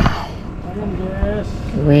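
A short sharp noise right at the start as a hooked red snapper is lifted clear of the sea, then a low steady rumble with faint voices.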